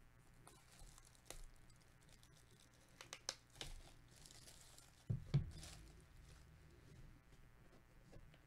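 Plastic shrink wrap being torn and peeled off a cardboard box, in scattered crinkling bursts, with two soft thumps about five seconds in as the box is handled.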